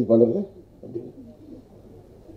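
A man speaking a few words into a hand-held microphone, then faint low murmuring voice sounds for the rest of the time.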